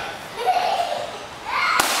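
A karate high kick striking a hand-held kick paddle once near the end, a single sharp slap.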